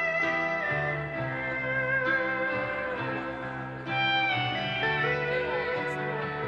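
Live band playing a slow instrumental passage: a steel guitar plays a weeping, sliding melody over held chords and bass notes.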